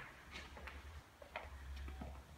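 Faint footsteps on a hard floor: a few light, irregular ticks over a low rumble.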